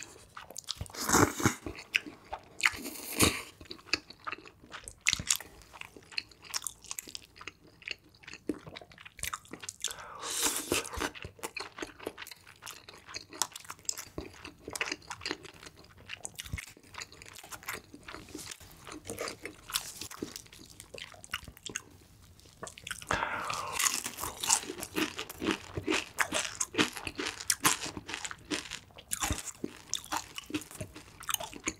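Close-miked eating: chewing of spicy fried noodles with many wet mouth clicks and crunchy bites, and longer noisy stretches of slurping about ten seconds in and again a little past twenty seconds.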